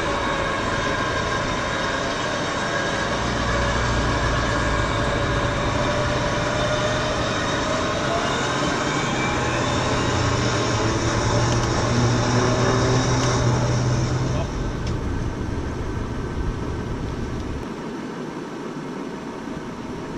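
Vehicle-mounted electric winch running under load, a steady whine with many tones over engine noise, as it pulls a car bogged in sand; a low engine drone joins about three seconds in. The winch stops about fourteen seconds in, leaving a quieter engine hum.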